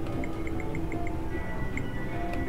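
Video poker machine dealing a hand: five short electronic beeps about four a second, one per card, then a held higher tone. Casino background music and ambience run under it.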